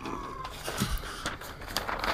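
Camera handling noise: rustling with a few soft knocks as the camera is picked up and moved to a new position.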